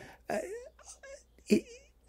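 A man's hesitant speech: a drawn-out "a" falling in pitch, a couple of faint hums, then another short "a" near the end.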